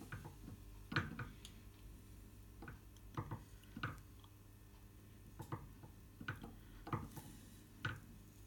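Faint, irregular light clicks and knocks, about a dozen, as the milling machine spindle is turned by hand to swing the dial indicator round to the opposite side of the bar.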